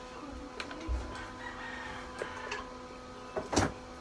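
A steady faint hum runs under a few scattered knocks and rustles of handling, with a louder bump near the end.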